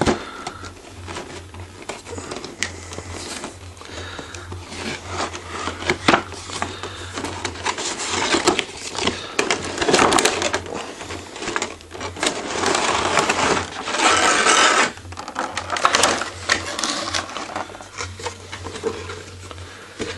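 Hands working a cardboard figure box open and sliding a clear plastic blister pack out of it: irregular rustling, scraping and crinkling of cardboard and plastic, with one longer scraping slide a little past the middle.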